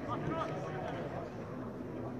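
Indistinct voices of people talking in the stands.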